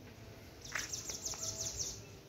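A bird calling: a quick run of high, downward-sliding notes, about eight a second, starting just under a second in.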